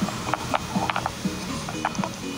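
Irregular sharp clicks, several a second, over faint background music.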